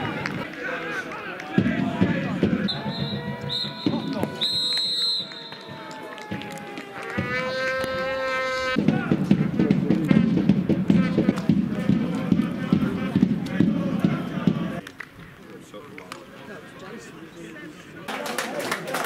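Referee's whistle blowing for full time: a few short, high blasts, then one longer blast of about a second, over players' and spectators' voices. A long shout follows, then a spell of crowd noise and chatter.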